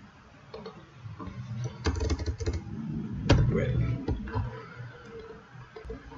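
Computer keyboard typing: a few scattered keystrokes and clicks, with the sharpest about two and three seconds in.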